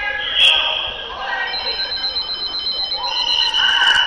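Shrill referees' whistles: a short blast about half a second in, then a rapid pulsing trill from about a second and a half, and a held blast near the end, over crowd chatter in a large hall.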